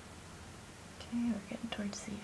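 Quiet room hiss, then a woman's voice speaking softly from about a second in.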